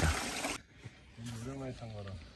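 A steady hiss that cuts off suddenly about half a second in, then a short stretch of a person's voice, quieter than the narration, in the second half.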